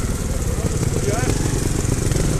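Trials motorcycle engine running steadily at low revs close by, a fast even beat with little throttle. A brief shout rises over it a little past the middle.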